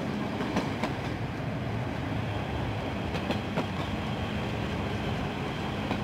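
Steady running rumble of a passenger train heard from inside the carriage, with a few faint clicks about half a second in and again a little past three seconds.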